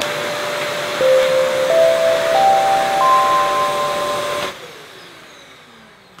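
Wet/dry vacuum cleaner running with a steady rushing motor noise. It cuts off about four and a half seconds in and winds down with a fading, falling whine.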